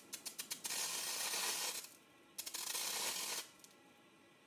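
Water drops sizzling on a very hot stainless-steel frying pan. A few sharp crackles come as the first drops land, then two bursts of hissing about a second each with a short gap between. The pan is far above boiling point, so the droplets skate on a film of steam (the Leidenfrost effect) rather than boiling away at once.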